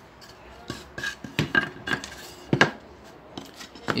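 A few light knocks and clicks from handling a fold-down table with a chrome metal leg and wooden top, the loudest about two and a half seconds in, with a faint metallic ring.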